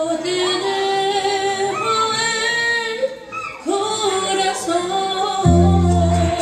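A woman singing a slow ballad into a microphone over a karaoke backing track, holding long notes and sliding up into each phrase. Deep bass notes from the backing track come in near the end.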